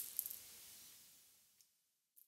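A brief crackling rustle over the first half second, fading into near silence.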